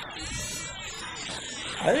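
A sound file played through a Max/MSP pfft~ spectral frequency gate that passes only the loudest frequencies, giving a weird, bubbly, artifacty sound, with frequencies popping in and out and wavering in pitch. A man's voice comes in near the end.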